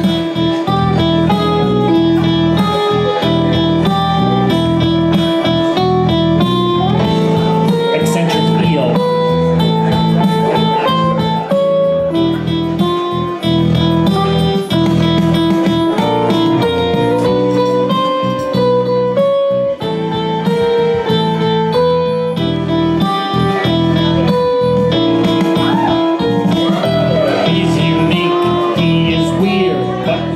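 Electric guitar playing a single-note melody, one string at a time, over a recorded backing track.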